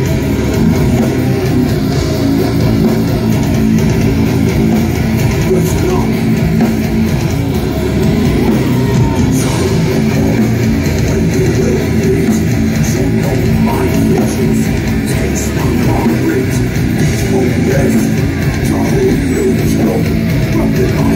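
A death metal band playing live: heavily distorted electric guitars, bass and drums, loud and continuous, heard from within the audience.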